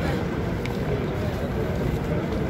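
Steady low rumbling handling noise from a phone's microphone rubbing against cloth and buffeted by wind as it is carried along.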